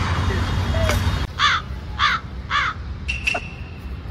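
A crow cawing three times, about half a second apart, after a second of background street noise. A short high tone follows near the end.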